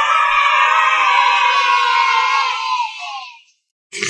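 A group of children cheering and shouting together in one sustained "yay", fading out after about three seconds.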